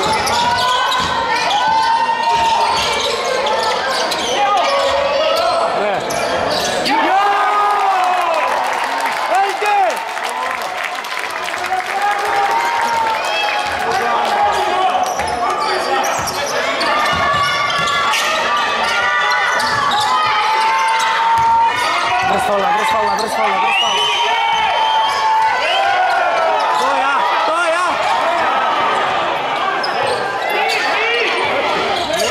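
A basketball being dribbled and bounced on a wooden gym floor during live play, with repeated knocks, shoes squeaking and voices calling across the hall.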